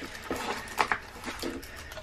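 Handling noise from a diamond painting canvas and its clear plastic cover: a few short, irregular crinkles and light clicks as a magnetic cover minder is clipped onto it.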